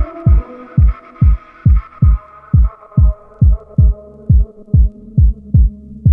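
Future garage electronic track: a deep kick drum beats steadily about twice a second while sustained synth chords fade away, and a low bass hum fills in under the beat.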